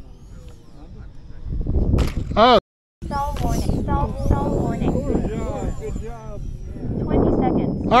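People talking over the high whine of an electric ducted-fan model jet in flight. The sound cuts out completely for a moment about two and a half seconds in.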